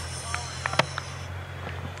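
Faint outdoor ambience: a steady low rumble with a few faint, distant voices and small clicks, plus a high hiss that fades out after about a second.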